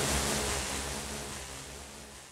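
Synthesized rushing noise like surf, with low held synth tones underneath, fading steadily away in a psychedelic trance mix: an atmospheric breakdown between beats.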